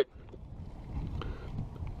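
Wind buffeting the microphone: an irregular low rumble that swells toward the middle.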